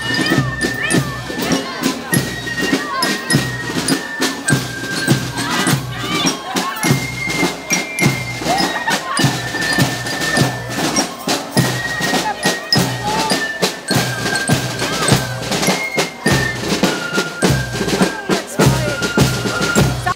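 Fife-and-drum marching band playing as it walks: a high flute melody of held notes over steady snare and bass drum beats.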